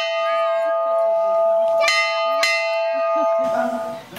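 Bell in an open wooden bell tower, rung by pulling its rope: the clapper strikes twice, about two seconds in and again half a second later, and the bell's steady ringing tone hangs on between strokes. The ringing cuts off shortly before the end.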